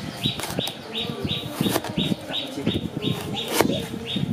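A chef's knife slicing through firm wood apple flesh, knocking sharply on the wooden cutting board a few times as slices come free. A quick, evenly repeating high chirp, about three a second, runs throughout.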